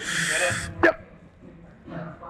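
A weightlifter's forceful hissing exhale, straining through a heavy rep on a plate-loaded incline press, followed about a second in by a short "yep" from the spotter.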